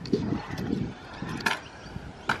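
Stunt scooter wheels rolling across a concrete skatepark bowl, a low rough rumble, with one sharp click about one and a half seconds in.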